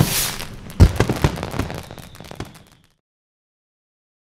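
Fireworks bursting and crackling: a loud bang about a second in, then a run of smaller pops and crackles that fade out by about three seconds in.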